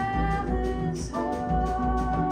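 A small jazz-leaning band playing live: acoustic guitar, double bass, piano and drum kit. A held melody note slides up into pitch about a second in, over walking bass notes and a steady beat.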